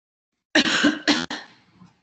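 A person coughing twice, starting about half a second in, the second cough shorter.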